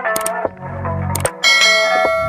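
Outro music for an animated subscribe button, with short mouse-click sound effects and a bright bell chime that starts about a second and a half in and keeps ringing.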